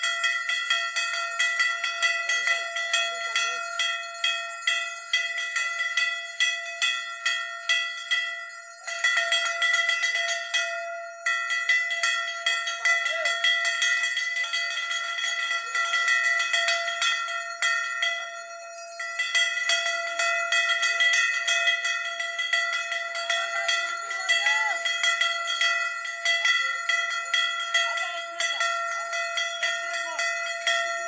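Many brass bells rung rapidly and without pause by a crowd: a dense clatter of strikes over a steady ringing tone, thinning briefly twice, with crowd voices faintly underneath.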